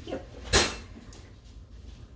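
A single sharp knock about half a second in, over quiet kitchen room sound.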